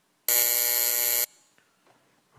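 The plenary chamber's electric buzzer sounds once: a single steady buzz lasting about a second. It marks the close of an electronic vote.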